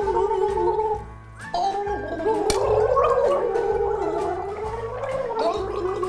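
A person gargling a mouthful of almond milk, a wavering voiced gurgle in two long stretches with a short break about a second in, over background music with a steady beat.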